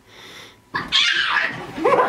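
Excited beagle vocalizing in play after a bath: after a brief hush, a sudden harsh, breathy burst about three-quarters of a second in, then a short rising note near the end.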